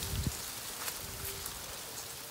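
Quiet outdoor background with faint rustling of dry banagrass leaves and canes close to the microphone.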